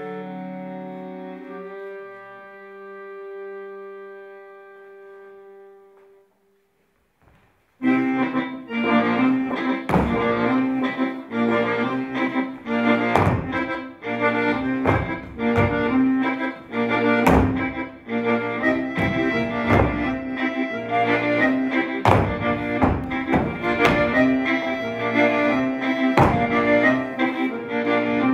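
Live stage music: sustained held chords fade away over the first six seconds, there is a brief silence, then about eight seconds in a loud piece starts, with sharp percussive hits over sustained chords.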